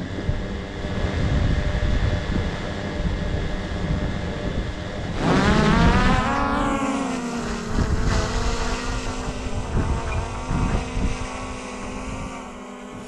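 A quadcopter camera drone's propellers spinning with a steady multi-tone whine. About five seconds in, the pitch rises sharply as it throttles up and lifts off, then it holds a higher whine as it flies away. Low wind rumble on the microphone runs underneath.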